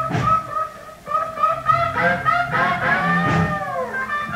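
Live electric blues guitar soloing over the band: short repeated high notes, a brief drop in level about half a second in, then a long bent note that swells and slides downward near the end.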